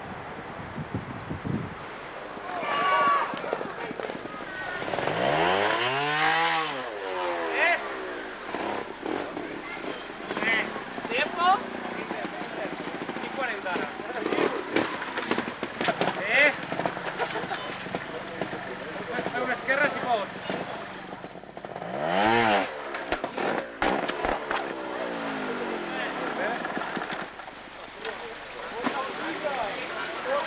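Trials motorcycle engine revved in sharp blips that rise and fall in pitch, loudest about six seconds in and again about twenty-two seconds in, with smaller blips between as the bike is worked over rocks. Spectators' voices sound around it.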